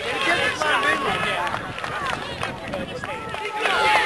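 Overlapping voices of sideline spectators and players, several people talking and calling out at once, with a few drawn-out calls near the end.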